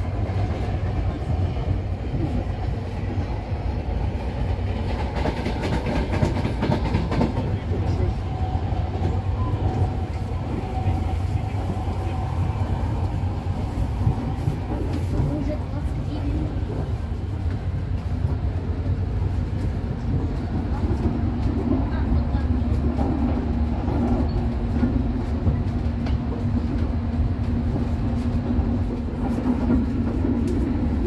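Running noise inside a moving double-decker passenger railway car: a steady low rumble of wheels on the track, with a faint steady hum coming in about two-thirds of the way through.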